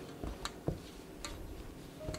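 A spoon knocking and scraping against a stainless steel mixing bowl in a few light, irregular clicks while broth is stirred into flour for dumpling dough.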